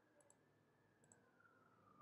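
Near silence with faint computer-mouse clicks: two quick double ticks, one about a quarter second in and one about a second in.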